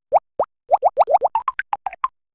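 Cartoon pop sound effects of an animated logo sting: two short upward-sweeping pops, then a quickening run of about a dozen more as the logo's letters pop into place.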